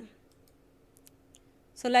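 A few faint, sharp computer clicks in a quiet pause, advancing the slide's animation.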